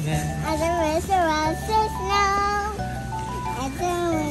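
Background music with steady bass notes, and a high-pitched child's voice over it.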